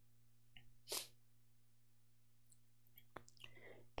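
Near silence over a faint steady electrical hum, broken by one short puff of breath or sniff into a close headset microphone about a second in, and a small click with a soft breath just after three seconds.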